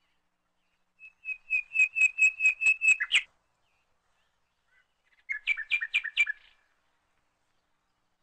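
Bird song in two phrases of clear, repeated whistled notes. The first phrase has about nine notes ending in a quick downward flourish. The second phrase is shorter and a little lower, coming about two seconds later.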